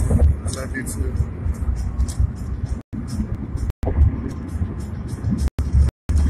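Low rumble of a car heard from inside the cabin through a phone's microphone. The audio cuts out completely for a moment three times.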